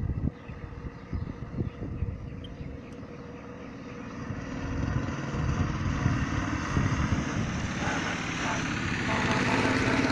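Motor-driven cable reel of a groundwater level meter running steadily as its measuring wire is fed through by hand, growing louder over the second half.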